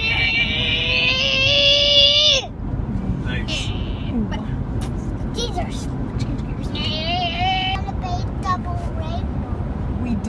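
Young boy holding a long, high sung note for about two and a half seconds, slightly rising, that cuts off suddenly, then a shorter wavering sung note a few seconds later. Steady car road noise runs underneath.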